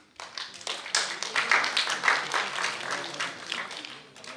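Audience applauding, with dense, overlapping claps that start suddenly just after the beginning, are loudest in the middle and thin out near the end.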